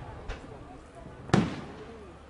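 Aerial firework shells bursting: a faint distant report about a quarter second in, then a loud boom about a second and a third in that echoes away.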